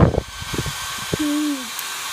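Hair dryer blowing steadily, with a young child's short held vocal sound a little past the middle that dips in pitch as it ends.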